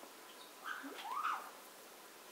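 A pet parrot calling briefly about half a second in: a short note, then a call that rises and falls in pitch.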